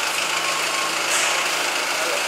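Forklift engine idling: a steady running noise with a brief hiss about a second in.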